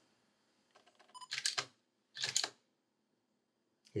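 DSLR camera taking a picture: a few faint clicks, then two sharp clacks of the mirror and shutter about a second apart.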